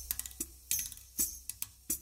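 Sparse, crisp strikes on a hand-built percussion set with mounted tambourines, about half a dozen hits in two seconds, each with a brief metallic jingle.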